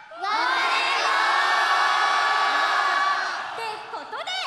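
A large concert audience shouting its answer to a call-and-response in unison, a drawn-out 'me too' in Japanese. The shout is held for about three seconds and fades out near the end.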